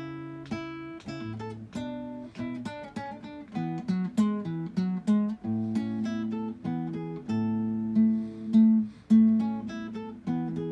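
Solo acoustic guitar playing a Baroque-style piece, a continuous line of plucked notes over a moving bass, with a few stronger plucked notes near the end.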